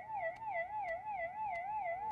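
Cartoon sound effect: a single warbling tone, wavering up and down about four times a second like a theremin, with faint ticks. It marks a character as dazed and gone crazy after a crash.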